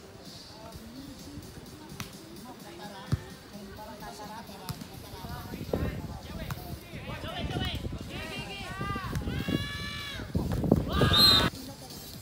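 Voices calling and shouting during a sand volleyball rally, with a single sharp slap of the ball about three seconds in. A loud shout comes near the end.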